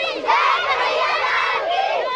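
A group of young girls shouting together as they run round in a hand-holding ring game, many high voices overlapping.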